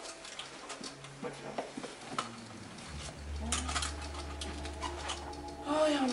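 Light knocks, clicks and rustles of books being handled at a bookshelf, with a low steady hum coming in about halfway through. A wavering voice starts right at the end.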